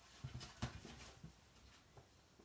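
A few faint soft knocks in the first second, then near-silent room tone.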